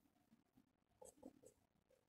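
Near silence with faint strokes of a marker pen writing on a whiteboard, a few short ones about a second in.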